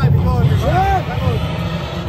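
Music with a heavy, steady bass line and a voice singing in gliding, arching phrases from about half a second to just past one second.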